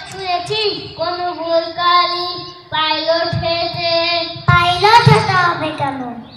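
A young child's voice chanting in a sing-song melody into a microphone, in several phrases with long held notes.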